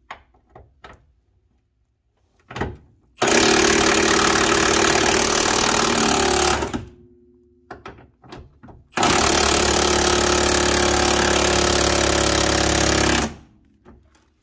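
Impact wrench hammering at a 19 mm lower-arm pivot bolt in two long bursts, a few light clicks of the socket going on before them. The bolt does not come undone: it is seized, welded by rust into the bush sleeve.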